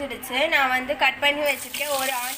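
A woman talking, and about one and a half seconds in a steady hiss of sizzling begins as chopped onion drops into hot oil in a pressure cooker.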